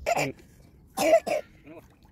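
Short bursts of a person's voice: a brief one at the start, then a louder double burst about a second in that is cough-like, with quiet between them.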